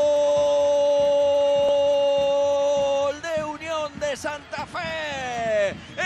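Football commentator's goal cry, one long "¡Gol!" held on a single steady pitch for about three seconds. It then breaks into excited shouting, with a long falling cry near the end.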